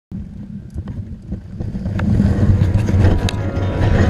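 Wind buffeting an action camera's microphone, a low rushing rumble that grows louder about halfway through, with a few scattered knocks.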